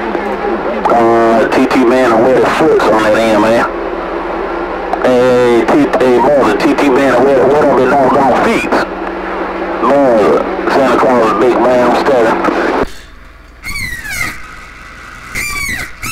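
A voice coming in over a CB radio's speaker, too garbled to make out, with a steady hum under it while the signal meter reads strong. About three seconds before the end the voice drops out and a run of falling whistle-like tones sounds.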